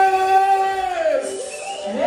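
Soca music with a long held sung note that slides down and fades just over a second in, then a new sung phrase starting near the end.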